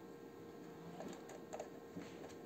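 A few faint clicks and taps of a small screwdriver and plastic parts on the chassis of an upside-down RC model truck, over a steady faint hum.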